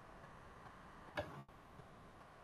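A single short click about a second in, over faint steady background hiss.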